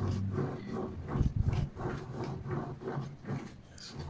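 Rope being wound by hand onto the shaft of a homemade generator built from a fridge compressor motor housing, the rotor turning slowly in its wooden supports: a quick run of short rubbing clicks, several a second, over a low steady hum.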